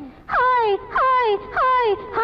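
A woman's singing voice in an old Tamil film song giving three short wailing cries, each sliding down in pitch, one after another.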